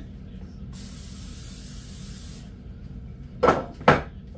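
Aerosol cooking spray hissing in one steady burst of about two seconds as it coats a baking dish, followed by a sharp knock near the end.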